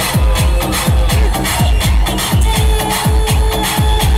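Loud electronic dance music played over a sound system, driven by a heavy kick drum whose thuds drop in pitch, about two beats a second.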